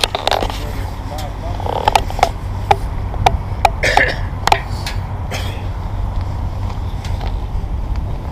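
A small hooked trout being reeled in on a spinning rod and reel: a string of sharp, irregular clicks and splashes over a steady low rumble.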